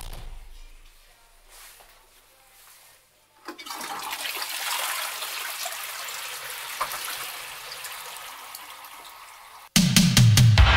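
A rush of water that starts suddenly about three and a half seconds in and slowly dies away, with music carrying a heavy bass beat cutting in just before the end.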